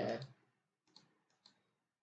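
A few faint computer mouse clicks about a second in, close together.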